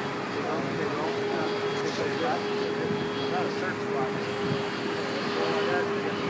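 Wind and rushing sea noise aboard a ship under way, with a steady hum and faint voices in the background.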